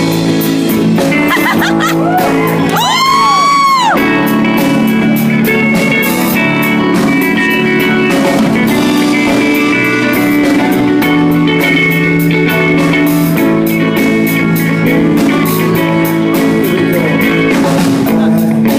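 Live band playing an instrumental passage of a pop-rock song, with drums, electric bass and electric guitar. About three seconds in, one note swoops up and falls back down.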